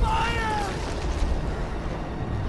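A man's high, anguished shout that falls in pitch and fades within the first second, over a deep, steady rumble.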